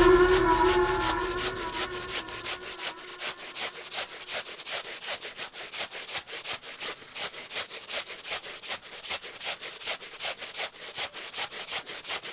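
A stiff plastic scrubbing brush scrubbing a wet, soapy cloth by hand, in quick, even back-and-forth strokes of about four to five a second.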